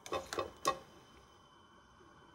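A wire spider strainer clinks lightly against a stainless steel pot a few times as cooked beans are tipped in, then near silence.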